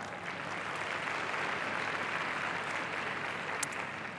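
Audience applauding, a steady spread of clapping that thins out near the end.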